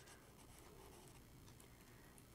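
Faint scratching of a soft charcoal pencil on sketchbook paper as a shadow is shaded in; otherwise near silence.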